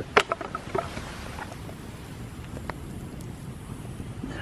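Wood campfire crackling over embers: a few sharp pops in the first second, then occasional fainter pops over a steady low hiss of outdoor noise.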